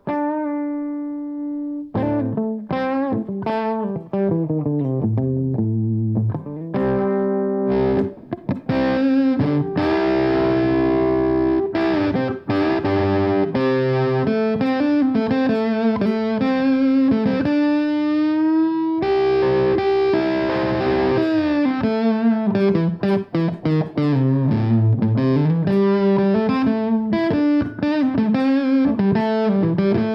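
Humbucker-equipped Les Paul-style electric guitar played through a fuzz pedal: a held chord, then single-note licks and chords. The tone is thick and saturated in two stretches, about a third and two-thirds of the way in, and cleaner in between, as the fuzz cleans up with the guitar's volume turned down.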